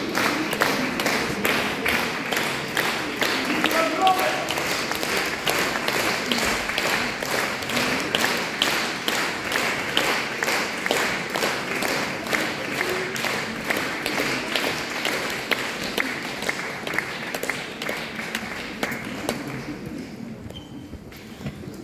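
Concert audience clapping in unison, an even beat of about three claps a second, slowly growing quieter toward the end.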